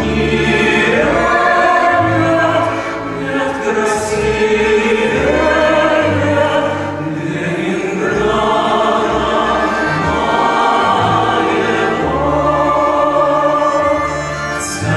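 A group of men's voices singing a Russian song together, with long held notes and short breaks between phrases roughly every four seconds, over low accompaniment.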